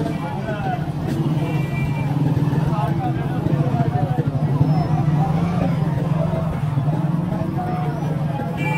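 Busy market street: many voices and crowd chatter over a steady low motorcycle engine hum, with a motorcycle passing close by near the end.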